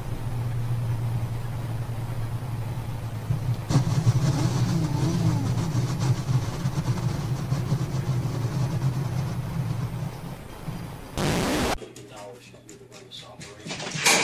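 A motor vehicle's engine running steadily, with voices over it. About eleven seconds in comes a short loud burst of noise, followed by a quieter stretch with a few clicks.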